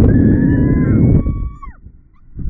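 Riders on a Slingshot reverse-bungee ride screaming, a long high-pitched held scream that trails off downward after about a second and a half, over heavy wind rumble on the microphone that fades as the scream ends.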